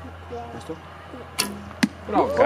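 Wooden recurve bow shot: a sharp snap of the string as the arrow is released about one and a half seconds in, followed about half a second later by a second sharp knock.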